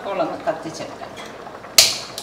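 A gas stove burner lit with a hand-held spark lighter: one sharp click near the end as the burner ignites, with a fainter click just after.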